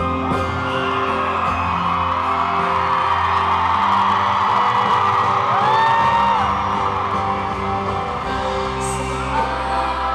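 Live acoustic-guitar ballad with a woman singing, heard through loud, steady audience cheering and screaming, with a few whistles.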